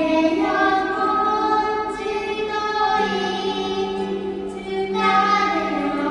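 A woman and a young girl singing a Korean Christian worship song together in long held notes, accompanied by two ukuleles, the voices echoing in a tunnel.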